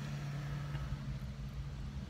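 Car engine idling: a steady low hum heard from inside the cabin.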